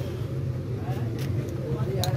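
Steady low background hum, with a few faint voice-like sounds near the middle.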